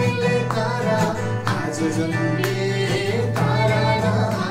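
Acoustic guitar strummed as accompaniment while a man and a girl sing a Christmas carol together.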